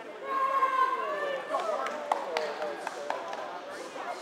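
Voices of spectators chattering across a large gym hall, with several sharp taps in the middle.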